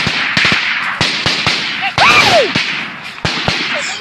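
Gunfire in a close firefight: many sharp shots in quick, irregular succession, some in rapid clusters, over a continuous hiss.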